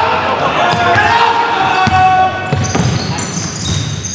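A basketball being dribbled on a gym's hardwood floor during a game, with players' voices in a reverberant hall.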